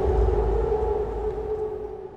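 Sustained drone of a cinematic intro sound effect, one steady mid-pitched tone over a low rumble, fading away to nothing.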